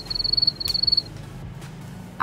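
Cricket chirping: two short, high, rapid trills in the first second, over quiet background music.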